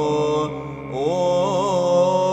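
Byzantine chant in tone 6 sung by a vocal ensemble: an ornamented melody line over a steady held drone (the ison). About half a second in the melody breaks off briefly while the drone holds, then comes back about a second in with a rising turn.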